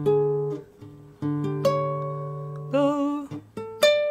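Classical guitar playing a short fill-in lick over a D chord: single plucked notes ringing over a held low open-string note, with a wavering held note about three seconds in.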